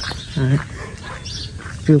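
A voice speaking two short words of Vietnamese over a steady outdoor background, with faint, short high chirps in between.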